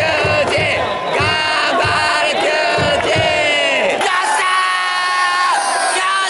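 Baseball cheering-section crowd chanting in unison over a drum beat of about two strokes a second. About four seconds in the sound cuts abruptly to long held sung notes without the drum.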